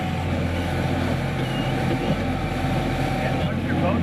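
Coast Guard boat's engines running with a steady low drone, heard from inside the boat's cabin.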